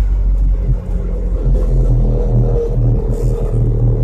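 Inside the cab of an electric pickup driven by a NetGain Hyper 9 motor, rolling at speed while towing an F-150: a steady low road and drivetrain rumble with a thin steady tone above it. There is no engine noise.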